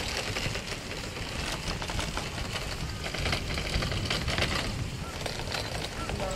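Outdoor wind buffeting the microphone: an uneven low rumble under a steady rough hiss with fine crackle.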